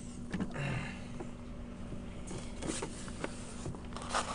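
Handheld-camera handling noise: clothing rustling against the microphone with a few light knocks and a brief swish about three seconds in, over a steady low electrical hum.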